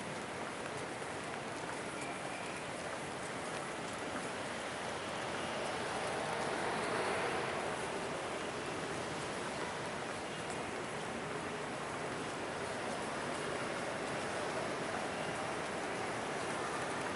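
Steady hiss-like background noise of a large, mostly empty airport terminal hall, with no distinct events, swelling slightly in the middle.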